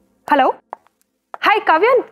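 A woman speaking into a phone: one short word about a quarter of a second in, a pause, then steady talk starting just before the end.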